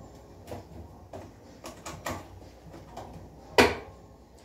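Cookware being handled at a stove: a few light clicks and knocks, then one sharper knock about three and a half seconds in.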